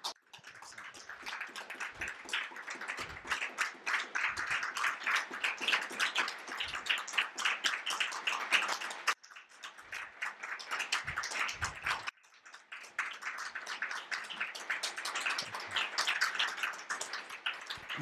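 An audience applauding, dense clapping that cuts out briefly about halfway through and again a few seconds later.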